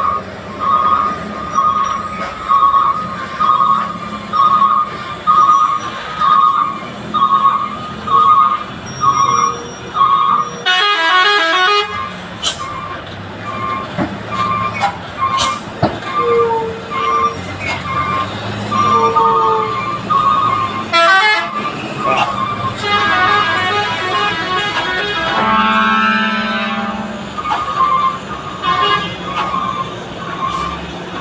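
Truck reversing alarm beeping steadily, a little faster than once a second, over idling diesel truck engines, as heavy trucks back and fill to get round a tight hairpin. Loud horn blasts cut in about eleven seconds in and again around twenty-one seconds, and several pitched horn tones sound together near the end.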